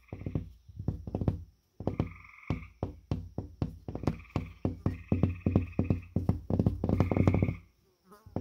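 Fingertips and fingernails tapping rapidly on a sheetrock (drywall) wall, giving hollow, bassy knocks several times a second in quick flurries. A higher buzzing tone comes and goes over the taps about four times.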